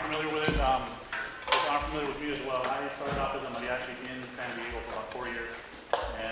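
Quiet, indistinct talking in a large hall, with a sharp knock about a second and a half in and another near the end.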